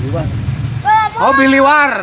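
Loud, drawn-out shouts or whoops from men's voices, over a steady hiss of rain. A low rumble on the microphone fills the first second.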